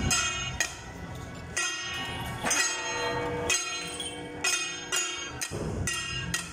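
Metal percussion of a temple-procession band, most like hand gongs, struck in an uneven beat about once or twice a second, each stroke ringing on.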